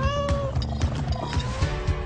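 A cat meowing once, a short held call right at the start, over music with a steady beat.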